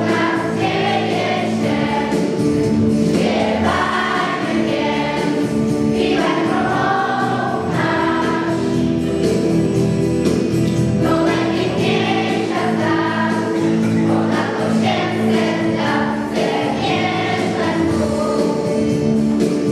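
Children's school choir singing together over sustained instrumental accompaniment.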